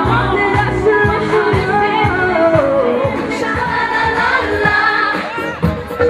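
Pop song with female voices singing a melody over a steady drum beat.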